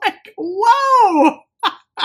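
A woman's drawn-out, laughing vocal sound lasting about a second, its pitch rising then falling, followed by a short breathy sound near the end.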